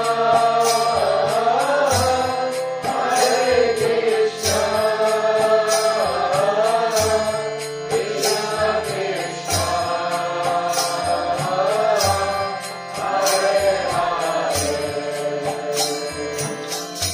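Kirtan: voices chanting a devotional mantra in a gliding melody, over a drum beating steady low strokes and hand cymbals clashing in rhythm.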